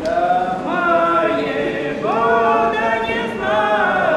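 A woman and a man singing a traditional folk song unaccompanied, in long held notes, with new phrases starting about two seconds in and again just after three seconds.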